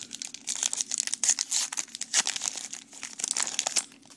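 A 2012 Topps Heritage baseball card pack wrapper being torn open and crinkled by hand, a busy run of crackling and tearing that starts about half a second in and dies away near the end.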